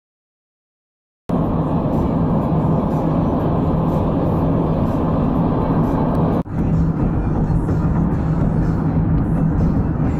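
Steady road and engine rumble heard inside a moving car, starting suddenly about a second in and briefly cutting out about six seconds in before resuming.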